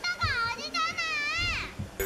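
A young girl's voice exclaiming "You're not Santa!" in a high, wavering pitch, played back from a music video.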